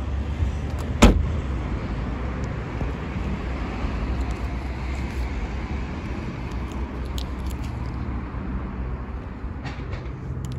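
Hatchback tailgate of a Hyundai Ioniq being shut: one sharp, loud thump about a second in. After it, steady low background noise with a few faint clicks.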